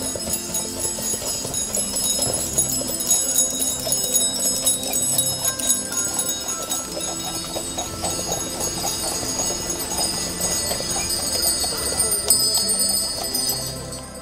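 Harness sleigh bells on Friesian horses jingling as horse-drawn sleighs pass close by, with background music underneath.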